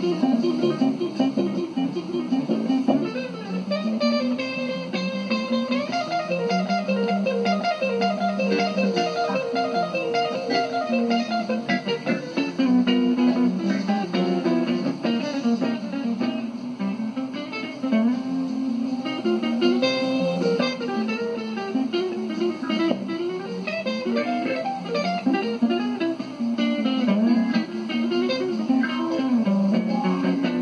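Electric guitar music: a hollow-body electric guitar playing a continuous melodic passage, with some notes held and some bending in pitch.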